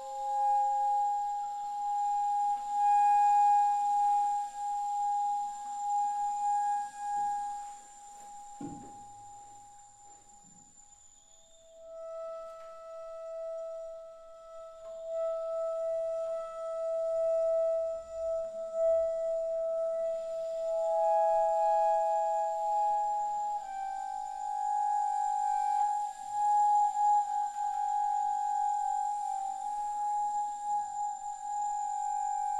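Bass flute playing long, soft, held notes of almost pure tone, one note sustained for many seconds before the next, as part of a piece for bass flute and live electronics. About nine seconds in the sound drops away for a few seconds, with a brief low falling sound, before a lower held note begins and later gives way to a higher one.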